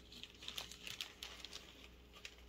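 Faint crinkling and scattered light ticks as fingers handle small floating beads and marshmallow bait on a square of spawn-net mesh.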